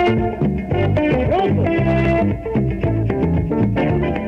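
Tropical dance band playing an instrumental passage between sung verses: bass guitar and electric guitar over percussion and keyboards, with a steady, bouncy dance beat.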